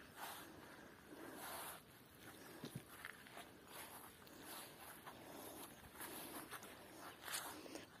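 Near silence: faint outdoor background with a few soft, faint clicks.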